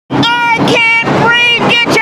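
A loud, high-pitched voice chanting or shouting in short held syllables, protest-style.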